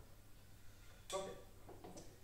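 Quiet room tone with one short spoken "ok" about a second in.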